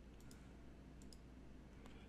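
Near silence with a few faint computer mouse clicks, two quick pairs and then a single click, over a low steady hum.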